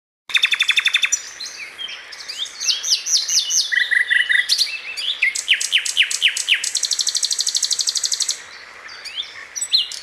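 Birdsong: varied phrases of rapid trills and quick downward-sweeping whistles, with a long fast trill a little past the middle, dropping to quieter chirps near the end.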